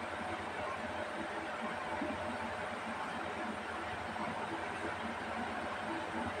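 Steady background noise, with faint soft, wet sounds of idli being mashed into sambar by hand and chewed.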